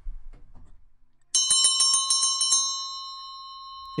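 Bell-ringing sound sample played back from the computer: about a second in, a bell is struck rapidly, about eight strikes a second for over a second, then its high ring fades out slowly.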